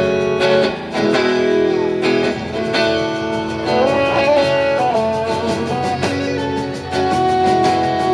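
Live band music: electric guitars and a fiddle playing sustained notes over the band, with some notes bending in pitch about four seconds in.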